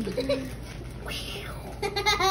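A toddler's short, high-pitched vocal sounds: a brief one at the start and another rising just before the end, with a soft hiss between.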